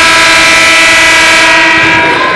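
Arena scoreboard horn sounding the end of the first period: one loud, steady blast.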